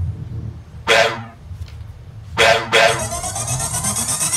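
Two short bark-like yelps, about a second and a half apart, then a rising electronic sweep leading into the music.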